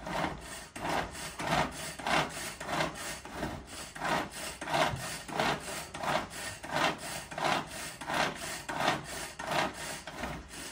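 Kitchen knife sawing back and forth through food on a wooden chopping board, a steady rasping stroke about twice a second.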